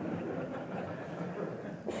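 Audience laughing in a lecture hall: many overlapping voices at once, as a steady, even wash of laughter that fades away near the end.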